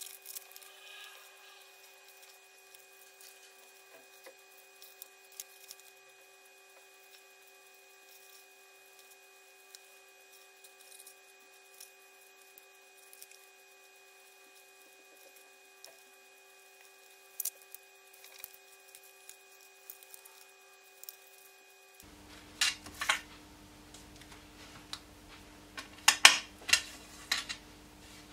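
Small scissors snipping around a cut-out in white card, faint sparse clicks. From about two-thirds of the way in, louder irregular rustles and taps as the cut card pieces are handled and pressed down on the desk.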